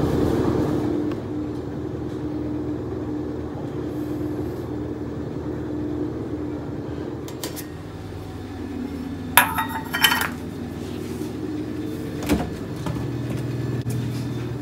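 Stainless steel bowls clinking against each other and a steel rack as one is lifted off a stack: a quick cluster of metallic clinks about nine to ten seconds in, then one more about two seconds later, over a steady low hum.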